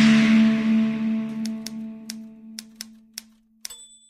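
Outro logo sting: a low, held musical tone that fades away over about three seconds. In the second half come a run of about seven sharp, typewriter-like clicks, and the last click has a short high ding on it near the end.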